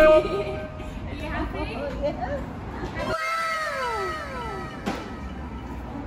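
Indistinct voices, then a drawn-out vocal sound falling in pitch about three seconds in, and a single sharp click near five seconds.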